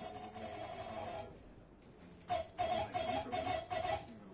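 Harsh electronic noise from a live turntable and electronics set: a buzzing tone over hiss cuts in sharply, stops about a second in, then comes back in stuttering, choppy pulses and cuts off abruptly at the end.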